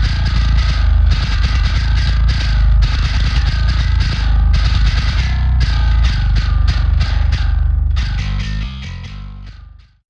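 Distorted electric bass guitar track playing back a heavy riff with strong low end. About eight seconds in it thins and fades to silence as the mid/side dial is turned to the side channel alone, which shows the track is mono with no side content.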